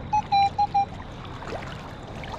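Minelab Equinox 800 metal detector sounding four short beeps at one mid pitch in the first second, a target response as its coil sweeps the riverbed. Under the beeps runs the steady wash of flowing river water.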